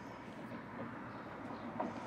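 Steady outdoor background noise with no distinct events, a low even wash of ambient sound.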